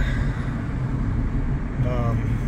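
Steady road and wind noise inside a moving car with its windows open: a low rumble with a hiss over it. A brief voice sound comes near the end.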